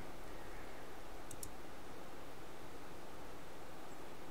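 A computer mouse button clicked once, a quick press-and-release about a second in, over a steady faint hum and hiss.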